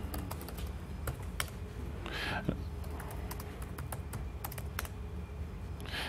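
Typing on a laptop keyboard: irregular light key clicks, over a steady low hum.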